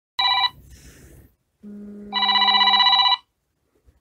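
Telephone ringing for an incoming call: a short ring, then a longer trilling ring about two seconds in, with a low hum starting just before it.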